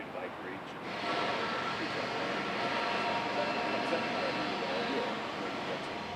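A reporter's question, faint and off-microphone, over a steady mechanical noise with a faint whine in it that swells in about a second in and holds.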